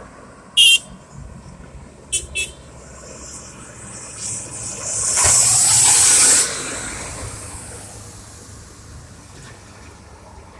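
Road traffic passing close by: a car, then a heavy dump truck towing a trailer, whose passing noise builds from about four seconds in, is loudest for a second or so and cuts off sharply before fading. Earlier come three short sharp sounds, a loud one about half a second in and two quick ones around two seconds.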